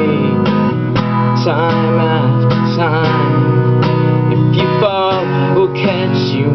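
Acoustic guitar played fingerstyle, plucked notes ringing over a steady bass, with a man's singing voice over it that wavers and bends in pitch.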